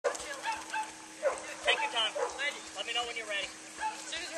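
A dog barking and yipping over and over in short calls, mixed with people's voices.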